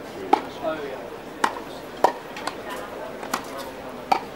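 Tennis ball struck by rackets in a baseline rally on a grass court: about four sharp pops roughly a second apart, with fainter hits between, over a murmur of onlookers' voices.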